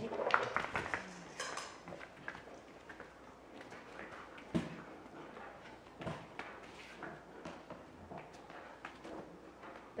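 Light knocks and clatter of a dog's paws stepping into a small plastic tub, busiest in the first second and a half. After that come scattered small clicks and taps as he moves about on the floor, with one sharper knock midway.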